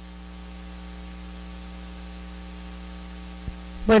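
Steady electrical mains hum with a row of even overtones, carried by the microphone and sound system, with a faint click about three and a half seconds in.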